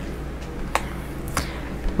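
Two sharp clicks of tarot cards being handled, about two-thirds of a second apart, over a low steady hum.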